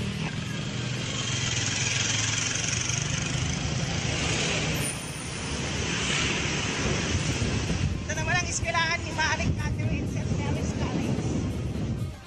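Wind and road noise from a moving vehicle rushing over the microphone, with engine hum underneath. A short wavering pitched sound, like a voice, comes through about eight seconds in.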